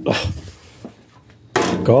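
Handling noise from a magnetic LED work light being lifted and set against the metal frame of a bandsaw, ending in a short sudden knock as it goes on.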